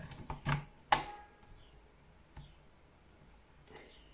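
Clicks and knocks of an 18650 lithium-ion cell being pushed into the spring-loaded bay of a LiitoKala Lii-500 charger: a handful in the first second, the sharpest with a short metallic ring. A couple of faint clicks follow near the end as the charger is handled.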